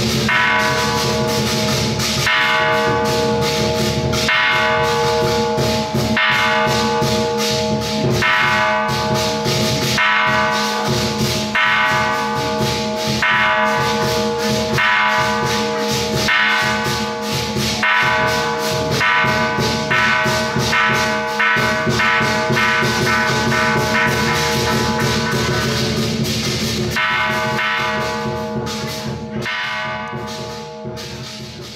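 Large bronze temple bell struck with a wooden mallet about every two seconds, each stroke ringing on into the next with several steady overlapping tones. The strokes stop near the end and the last ring dies away.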